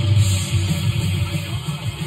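Death metal record playing through room speakers: fast, distorted electric guitar riffing with a heavy low end.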